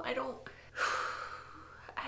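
A woman's voice trailing off, then a sharp, audible intake of breath just under a second in that fades away over the next second.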